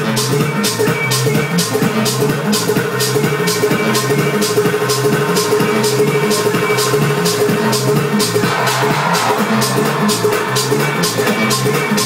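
Electronic dance music from a DJ set played over the sound system, a steady beat with hi-hats ticking about four times a second over a held note and little deep bass. A noisy swell rises in about eight seconds in.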